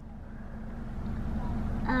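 Low rumble of a car heard from inside the cabin, growing steadily louder.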